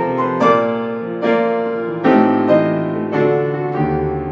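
Grand piano played solo: chords struck in a steady pulse under a melody, with a deep bass note entering near the end.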